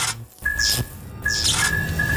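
Intro sound design of a neon sign sparking on: three bursts of electric crackle and buzz, each starting and cutting off abruptly, over music.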